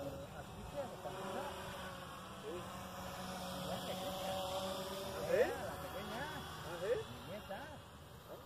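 Electric motor and propeller of a small RC model plane droning steadily in flight, with many short rising-and-falling chirps over it, loudest about five seconds in.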